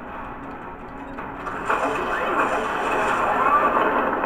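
A sci-fi TV episode's soundtrack playing through speakers: a faint clacking of a ship's display screen, then the score and sound effects grow louder about a second and a half in.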